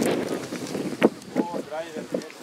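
Footballers' voices calling out across an open pitch, with wind buffeting the microphone. A single sharp crack about a second in.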